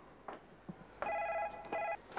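Telephone ringing: one ring of about a second, starting about a second in.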